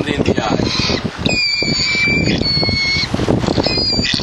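Swallow-tailed gull calling in long, high, steady whistled notes, several in a row starting about a second in, over a steady background rush.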